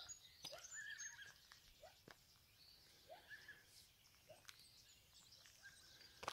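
Near silence, with faint distant bird calls: short warbling notes and chirps a second or so apart.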